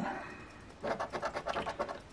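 A large coin scraping the scratch-off coating from a lottery ticket, in a fast run of short, even strokes that begins about a second in.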